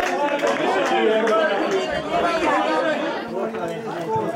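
Chatter: several people talking over one another in conversation, no single voice standing out.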